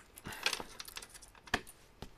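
A few light clicks and clinks of small objects being handled, the sharpest about one and a half seconds in.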